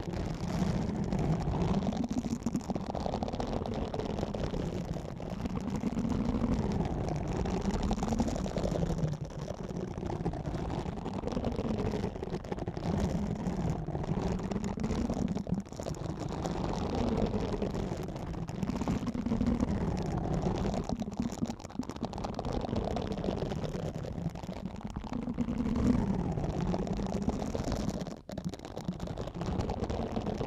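Silicone exfoliating scrubber rubbed against the ASMR microphones in slow, repeated strokes, a dense continuous rubbing noise that swells and eases with each stroke.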